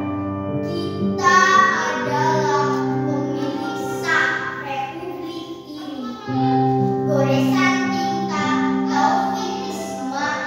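A girl's voice performing a poem aloud in a drawn-out, sung manner over held keyboard notes. The voice comes in about a second in, with a short lull a little past the middle.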